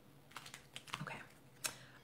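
A few faint, short clicks and taps at an uneven pace, the sharpest near the end.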